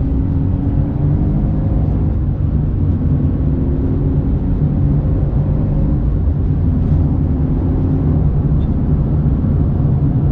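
Sports car with a Record Monza exhaust cruising at a steady speed, heard from inside the cabin: a steady low engine and exhaust drone over road rumble.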